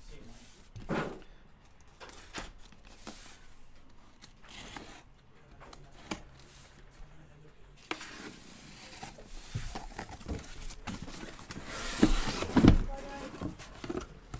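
A blade slitting the packing tape on a cardboard shipping case, with scratchy cutting and rustling, then the cardboard flaps pulled open and boxes slid out, with louder scraping and thuds of cardboard near the end.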